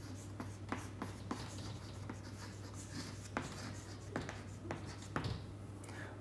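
Chalk writing on a chalkboard: a run of short taps and scratches as a line of words is written, coming thick at first and sparser later, over a steady low hum.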